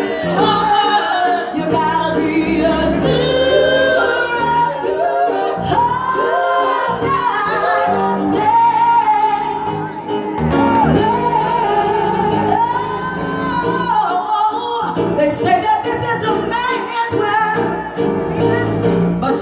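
A female soul singer singing live at a microphone in long held notes that bend and slide in pitch, with a live band behind her.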